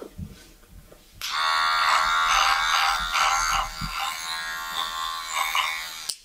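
Cordless electric hair trimmer buzzing. It starts suddenly about a second in, runs steadily, and cuts off sharply at the end.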